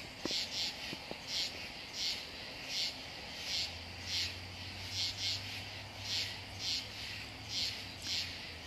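Night insects chirping in a steady rhythm, about two short high chirps a second, some coming in close pairs.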